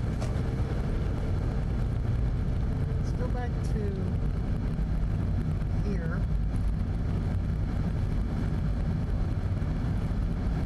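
Car driving on a snowy road, its steady road and engine noise heard from inside the cabin. A couple of short wavering pitched sounds come through, about three and a half and six seconds in.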